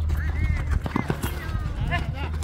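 Shouting voices over several dull knocks from running feet and ball touches on a hard dirt pitch during youth football play, with a steady low rumble underneath.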